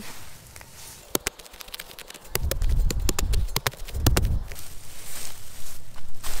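Spade cutting into thick St. Augustine grass turf and levering up a clump of sod. Sharp snaps and crackles come from about a second in, then a close run of heavy thuds and crunches for about two seconds as the blade is driven in and the sod tears loose.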